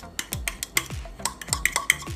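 Metal fork scraping and tapping against a plastic bowl while scooping out guacamole: a quick run of sharp clicks.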